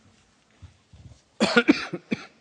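A person coughing about three times in quick succession, starting about one and a half seconds in.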